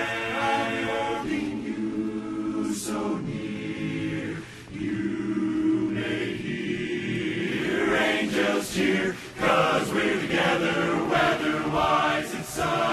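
Men's barbershop chorus singing a cappella in close harmony, holding long sustained chords. The sound dips briefly about four and a half seconds in, then swells into a fuller, louder passage.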